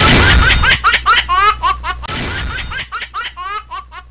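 Cartoonish laughter sound effect from the show's animated logo ident: a rapid string of high-pitched 'ha-ha' syllables over a faint low hum, opening with a loud hit.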